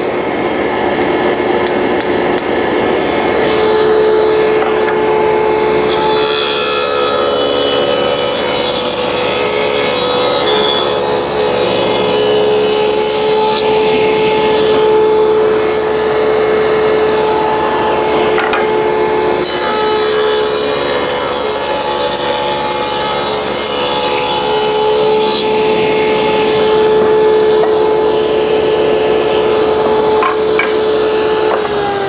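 Table saw running with a steady whine, its blade cutting a dado groove into wooden rail stock in repeated passes, the cutting noise swelling and fading as each piece is fed through. The dado is being widened a little at a time to fit a plywood panel.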